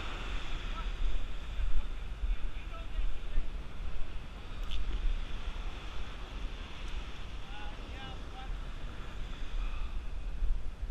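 Wind buffeting the microphone in a steady, gusty rumble, with surf breaking on the beach behind it.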